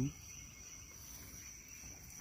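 Faint, steady high-pitched insect chorus, a continuous cricket-like trill, over low outdoor background noise.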